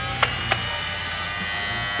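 Toy Dyson-style cordless stick vacuum cleaner running its sound effect: a steady, even whirring whine from its small motor. Two light clicks about a quarter and half a second in.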